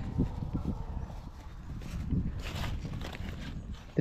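Wind rumbling on the microphone in an open field, with scattered soft knocks and a brief rustle about two and a half seconds in.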